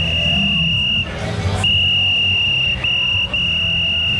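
A high, steady whistle-like tone held at one pitch, cutting out and starting again three times, over background music.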